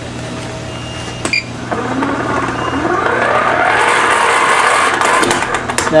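Small hand-crank generator being cranked fast: its gears whine, rising in pitch and getting louder as it spins up over a few seconds. There is a click about a second in.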